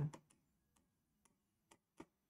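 Faint, irregular ticks of a pen tip tapping on the glass of an interactive whiteboard as a word is written by hand, about six over two seconds.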